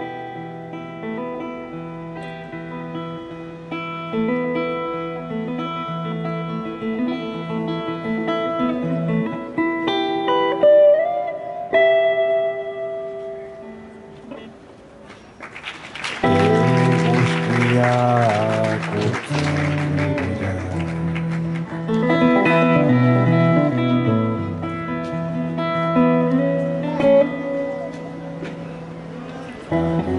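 Solo steel-string acoustic guitar played live: fingerpicked notes with a couple of sliding notes, a quieter moment about halfway through, then a loud strummed passage before it returns to picked notes.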